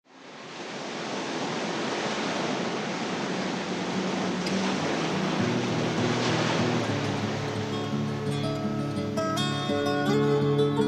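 Song intro: a steady wash of surf noise fades in. About halfway through, acoustic guitar notes enter and grow clearer toward the end.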